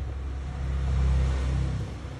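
A low rumble that swells to its loudest about a second in and drops away near the end, with a steady hiss above it.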